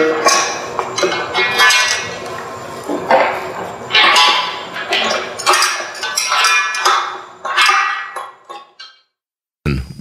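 Metal clinks with short ringing from a hand wrench working a bolt into a metal ramp leg, about one or two strokes a second, fading away near the end.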